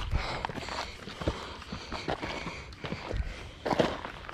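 Footsteps on a rocky, gravelly trail: irregular knocks and scuffs, with clothing rubbing against the phone's microphone. The loudest thump comes a little past three seconds in.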